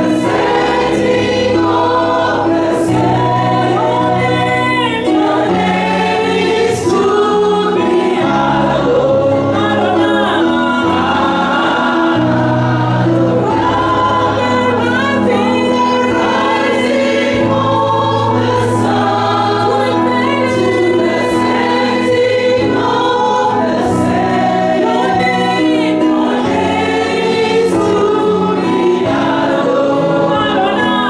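Gospel worship singing: a woman sings lead into a handheld microphone, with other voices joining in, over held low notes that change every second or two.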